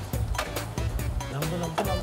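Dramatic background score with a steady beat of about three strikes a second over low sustained notes, and a low note sliding upward about midway.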